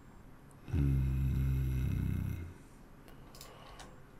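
A man's low, drawn-out, buzzy "hmm" lasting about a second and a half, a hesitation sound while he thinks.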